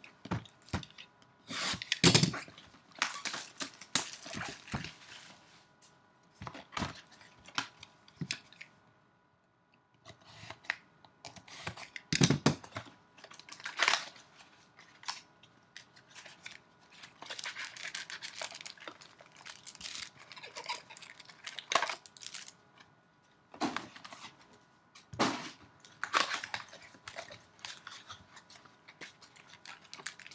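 A Bowman Chrome baseball card hobby box and its packs being opened by hand: irregular ripping and crinkling of wrappers and cardboard, with a few sharper tears and a brief lull about nine seconds in.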